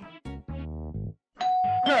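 A short falling musical sting, a brief pause, then an electronic doorbell chime about a second and a half in, its tone ringing on.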